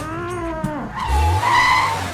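A man's short strained growl, then, about a second in, a car's tyres squealing for about a second as it pulls away hard, with the engine revving low underneath; the squeal is the loudest sound.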